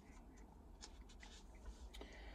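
Near silence with a faint rustle of paper sheets being handled: a few soft crinkles in the second half.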